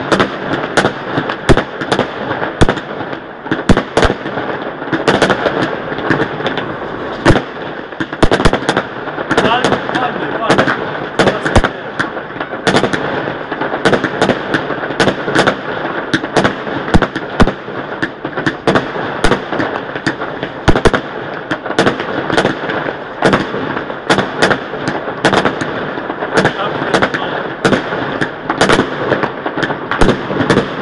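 Fireworks and firecrackers going off without a break: a dense, irregular barrage of sharp bangs, several a second, over a continuous crackling haze.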